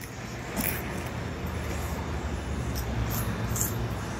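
Steady low rumble of a vehicle or nearby traffic, with a few short crunchy clicks of onion rings being chewed.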